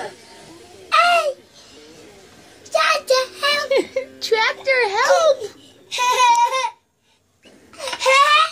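A toddler boy laughing and squealing in several excited high-pitched bursts, the pitch sliding up and down, with a short silent break near the end.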